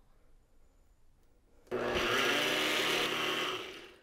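Blender motor running on a creamy liquid mix (sweetened condensed milk, brandy, cream and syrup). It starts suddenly about a second and a half in, runs steadily for about two seconds, then winds down near the end.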